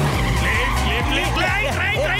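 Cartoon car tyres screeching in a string of short wavering squeals as a car skids along, over background music with a pulsing bass line.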